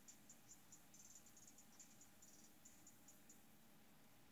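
Near silence: faint room tone with soft, high-pitched chirps repeating a few times a second, coming in irregular runs.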